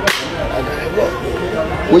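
A single sharp crack right at the start, with a brief ringing tail, then a low background murmur.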